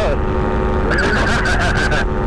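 Paramotor engine and propeller running steadily in flight, a constant drone of several steady pitches heard from the pilot's seat, with a laugh over it about a second in.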